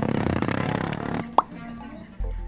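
A rush of noise that drops away about a second in, then a single short plop with a quickly rising pitch, like something small dropping into water, about one and a half seconds in.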